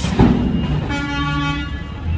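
A sharp bang just after the start, then a vehicle horn tooting once for about a second, a steady buzzy note. Underneath are the running engines of a wheel loader and a garbage truck.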